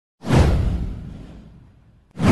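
A cinematic whoosh sound effect: one sudden swoosh about a quarter second in, with a deep low end, falling in pitch and fading away over about a second and a half.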